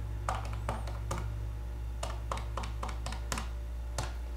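Keys of a handheld calculator being pressed, about a dozen light clicks in quick, uneven runs, over a steady low hum.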